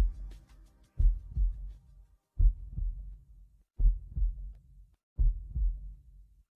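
Low double thumps like a heartbeat, four pairs about 1.4 s apart, starting about a second in as the last of the music fades out.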